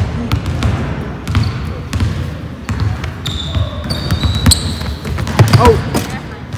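Basketball bouncing on a hardwood gym floor, a run of short sharp thuds at an uneven pace. Voices chatter underneath.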